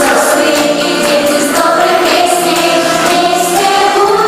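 Several female voices sing a Russian children's pop song together into microphones, over a backing track with a regular beat.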